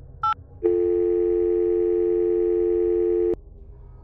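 Telephone keypad tone beeping once as the last digit of 911 is dialled, then a steady two-note ringing tone on the line for about two and a half seconds that cuts off suddenly as the call is answered.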